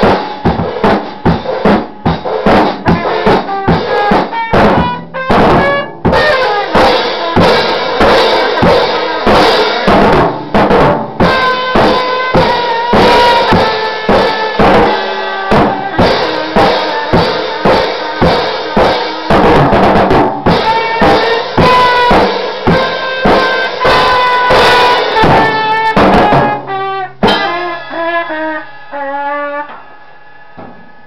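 Trumpet playing a jazz line over a drum kit, with kick drum, snare and rimshots. Near the end the drumming stops and a few held notes ring on.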